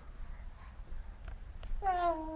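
A nine-month-old baby's short vocal sound near the end, one held 'ah'-like call falling slightly in pitch, after a few faint taps.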